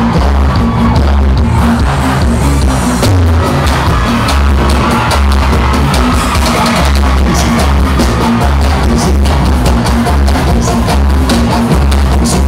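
Loud live band music with a heavy bass beat pulsing steadily.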